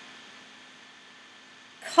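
A pause in the talk: faint steady hiss with a low hum underneath, then a woman starts speaking again near the end.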